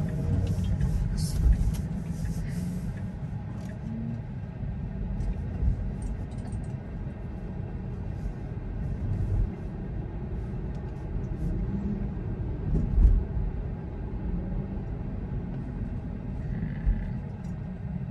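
Low, steady road and tyre rumble heard inside the cabin of a moving Tesla electric car, with no engine note, and a few small knocks from the road.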